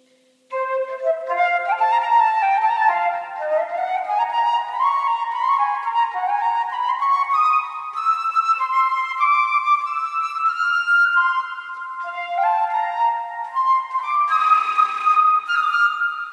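Concert flute playing a fast étude: quick runs of notes that climb in steps, again and again, after a short pause about half a second in, ending on a held high note. Each note rings on in the echo of a stone church.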